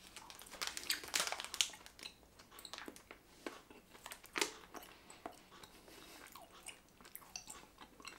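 A person chewing a slightly firm fruit gum with the mouth closed: faint, irregular wet clicks and smacks, busiest in the first couple of seconds and sparser after.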